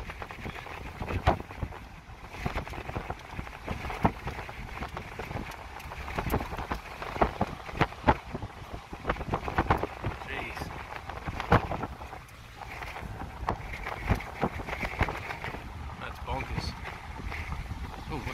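Strong, gusty wind buffeting the microphone at an open car window: a steady rush broken by irregular thumps from the gusts.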